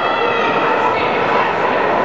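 Crowd noise in a large indoor hall: many voices talking and shouting at once, with a short high-pitched shout near the start.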